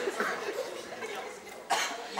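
A single short cough near the end, sharp and brief.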